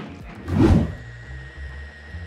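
A single dull thump about half a second in, followed by a steady low hum, with background music.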